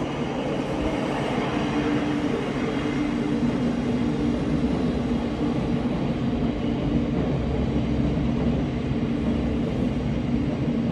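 Passenger train running past: a steady running noise with a constant low hum.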